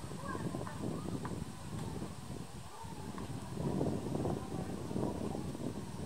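Indistinct chatter of a crowd of visitors talking all at once, with no single voice standing out.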